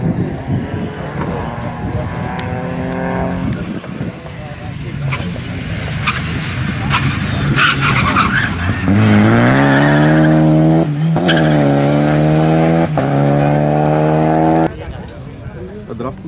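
Renault Clio rally car's engine held at high revs on the approach, lifting off about three and a half seconds in, with a few sharp cracks as it slows. It then revs hard and loud close by, changing up twice, until the sound cuts off abruptly near the end.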